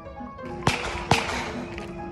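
Two sharp gunshots about half a second apart, over background music with one held note.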